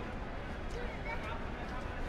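Outdoor city ambience: indistinct distant voices over a steady low rumble.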